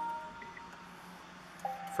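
Nissan Leaf power-on chime as the push-button start is pressed and the car powers up. A steady electronic tone sounds for about a second, then a second, lower tone starts near the end.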